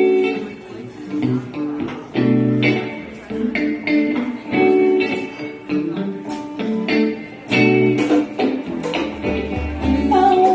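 Live band playing an instrumental song intro: electric guitar chords strummed in a steady, rhythmic pattern.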